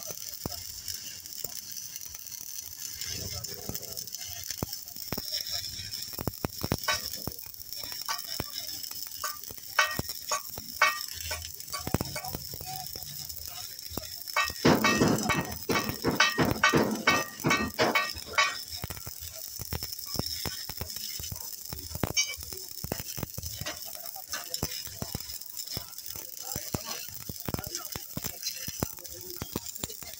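Stick (arc) welding on a steel truck chassis frame rail: the electrode arc crackles and sizzles with irregular pops, loudest for a few seconds just past the middle.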